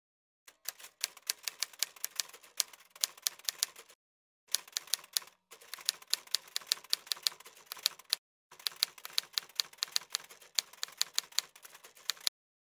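Typewriter key-strike sound effect: rapid clacking keystrokes in runs, broken by short pauses about four, five and eight seconds in.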